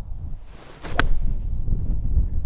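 Full eight-iron swing hitting a golf ball off an artificial tee mat: a short rush of the downswing, then one sharp click of impact about a second in. Wind rumbles on the microphone throughout.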